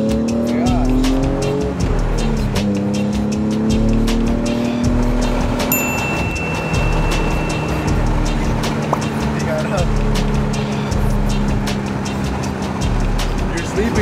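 Car engine accelerating hard, heard from inside the cabin: its pitch climbs, drops at a gear change about two seconds in, climbs again, then holds steady.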